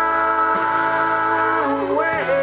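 Live slow country ballad in an instrumental gap: acoustic guitar chords ringing out, the low bass note changing about half a second in, and a bending, wavering melody note coming in near the end.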